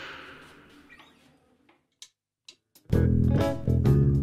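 A few faint clicks in near quiet, then about three seconds in two electric guitars start playing a song's intro together, loud and rhythmic.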